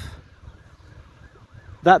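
A faint siren wailing, its pitch rising and falling, in the short pause between spoken words.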